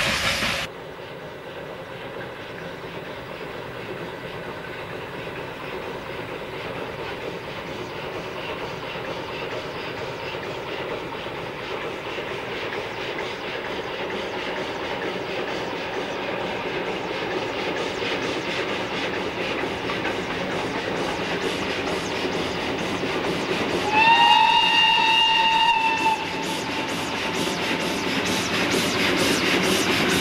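Steam locomotive hauling a passenger train, its running and exhaust growing steadily louder as it approaches. About three quarters of the way through it sounds its steam whistle, one steady note for about two seconds. The whistle is followed by quick exhaust beats and rail clatter as it comes close.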